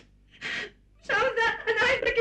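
A woman crying: a sharp gasping breath, then from about a second in a run of high-pitched, broken sobs.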